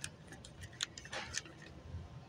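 Handling noise from a plastic-wrapped party decoration package being put back on a store shelf display: a quick run of sharp plastic clicks with a brief crinkle a little over a second in.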